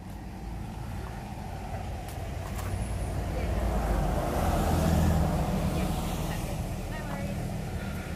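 A road vehicle driving past, its low engine rumble growing louder to a peak about halfway through and then fading away.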